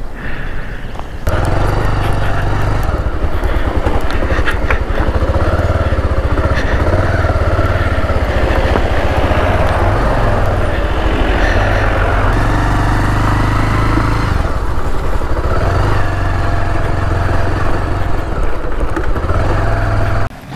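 Motorcycle engine running while riding on a rough gravel road, picked up from the handlebars with wind rushing over the microphone. It gets louder about a second in, and the engine note drops and rises a few times.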